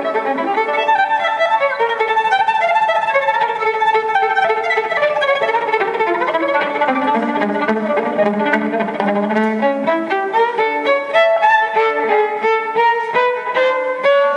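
Live gypsy jazz (jazz manouche) played by violin, acoustic guitar and accordion, with the violin leading. Its melodic run falls to the violin's lowest notes about halfway through and climbs back up, over the rhythmic guitar and accordion accompaniment.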